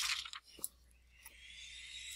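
Faint mouth and breath noises from a narrator close to a microphone: a short hiss at the start, one sharp click about half a second in, then a soft breath building toward the end.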